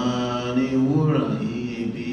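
A man singing a Yoruba song unaccompanied into a microphone, holding long, drawn-out notes.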